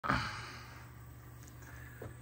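A person's breathy exhale close to the microphone, loud at the very start and fading within about half a second, over a steady low hum.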